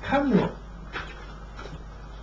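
A man's voice through a microphone and PA: one short drawn-out vocal sound whose pitch rises and then falls, with a faint click about a second in.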